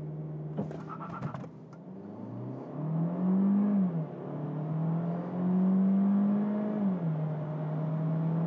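Citroen C5X's 1.6-litre turbocharged four-cylinder engine heard from inside the cabin, accelerating hard in sport mode. Its note climbs in pitch, falls back as the gearbox shifts up, climbs again, and drops with a second upshift near the end.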